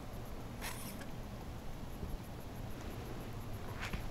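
Two brief rustles, one about half a second in and one near the end, over a low steady rumble.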